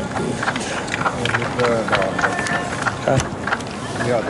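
Several voices of players and people around the pitch calling out, with several sharp knocks scattered among them, inside a large indoor football hall.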